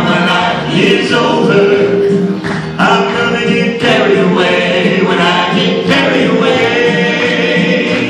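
A four-man male gospel group singing a song in harmony through a sound system, the blended voices continuing without a break.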